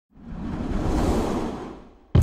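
A whoosh sound effect, like a film ident's, that swells up over about a second and fades away.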